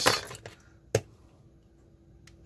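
Two sharp clicks of small tools and plastic parts being handled on a workbench, one right at the start and a louder one about a second in, with a faint steady hum underneath.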